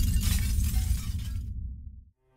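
Logo-sting sound effect of glass shattering over a deep rumble. The crackle of falling shards stops about one and a half seconds in, and the rumble dies away at the end.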